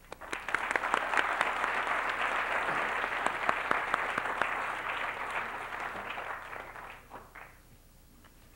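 Audience applauding: many hands clapping in a dense patter that starts right away, holds for several seconds, then dies away about a second before the end.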